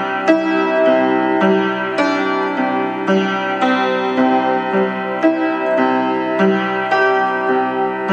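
Vintage Tokai upright piano, built around 1940–45, playing a slow original piece: single notes and chords struck about twice a second, each ringing on into the next over a recurring low note. Some strings are out of tune; the player names A, B and E as badly off.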